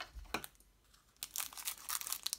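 Foil wrapper of a Panini trading-card booster pack crinkling and tearing as it is pulled open by hand. A few crackles come first, then a short pause, then a run of rapid crackling from just over a second in.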